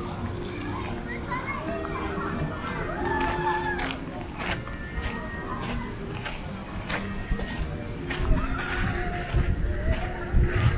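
Busy pedestrian street: children playing and calling out, with passers-by talking and faint music. Scattered sharp clicks run through it.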